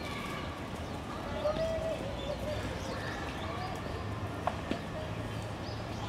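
Park crowd ambience: people talking at a distance over a steady background hum, with hard footsteps on the path and a couple of sharp clicks about four and a half seconds in.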